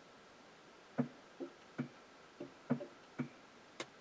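Irregular ticks from underneath a Tesla Model S while it installs a software update: about seven short ticks over three seconds, starting about a second in.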